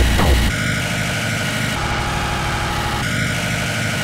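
Speedcore electronic track: the fast, pounding kick-drum beat cuts out about half a second in. It leaves a beatless break of a rough, buzzing low drone with steady high synth tones.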